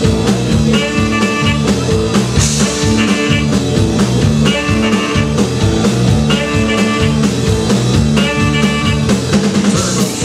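Live rockabilly band playing an instrumental passage with electric guitar, bass and drums, a short riff repeating every couple of seconds.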